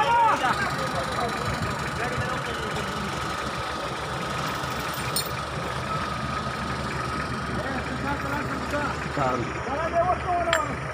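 A Toyota Hilux pickup's engine idles steadily. Men's voices call out about a second in and again near the end.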